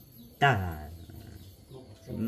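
One short word or exclamation in a man's voice about half a second in, falling in pitch and fading quickly.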